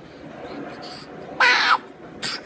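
A baby's single short, loud, high squeal about two-thirds of the way through.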